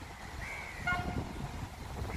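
Kawasaki-CSR Sifang C151A MRT train (set 3561) sounding its horn in the depot: one short toot about a second in.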